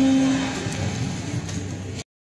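Live band with drums, electric guitar, bass, keyboard and saxophone ending a piece: a last low note holds for about half a second, then the sound dies away into ringing and amplifier hum.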